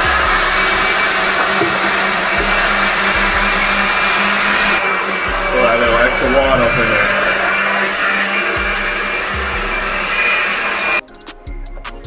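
Electric countertop blender running steadily as it purées tree tomatoes with sugar and water into juice, then switching off about a second before the end.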